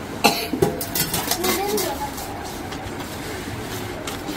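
A few sharp metallic knocks in the first second, one ringing briefly, from a lidded stainless-steel pot being handled on a tiled floor. Voices murmur in the room around it.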